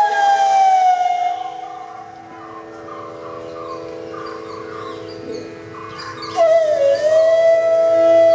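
A bansuri (bamboo flute) phrase glides down and fades out in the first second or so. For a few seconds only a soft steady drone is left. About six seconds in a second bansuri enters with a brief dip in pitch and then holds a long steady note.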